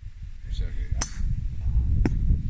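A golf club striking a ball once, about a second in: a single sharp, bright click with a short ring.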